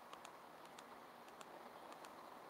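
Faint, irregular clicks of a SMOK ProColor box mod's buttons being pressed to switch it off, against near silence.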